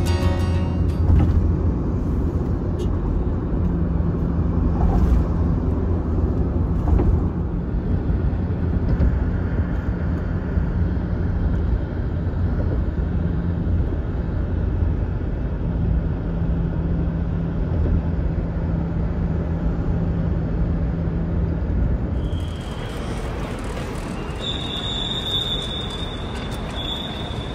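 Inside a moving Toyota car at road speed: steady tyre and road rumble with a low engine hum. About 22 seconds in this gives way to open-air ambience with a thin, steady high whine. Guitar music fades out in the first second.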